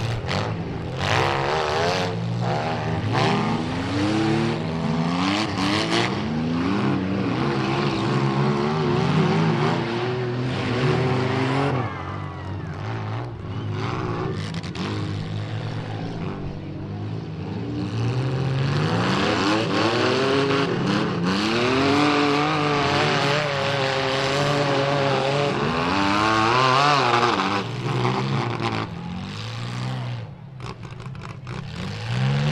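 Several demolition derby cars' engines revving up and down together, overlapping, as the cars drive and shove through mud, with scattered knocks and clatter of car bodies hitting.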